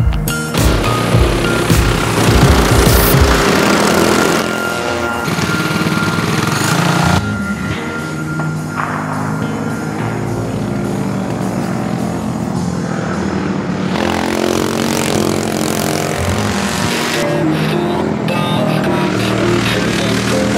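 Background music over racing kart engines, which rise and fall in pitch as the karts rev and pass.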